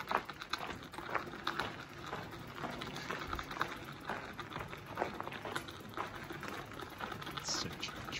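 Gravel crunching in quick, irregular clicks as it is crossed on a rough, unlit tunnel floor.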